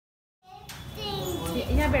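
Silence for about half a second, then a child's voice and other voices chattering.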